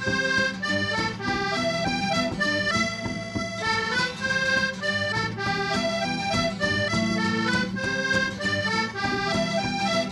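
Button accordion playing a quick traditional instrumental tune, the melody moving in rapid notes over steady bass chords, with an acoustic guitar strumming along.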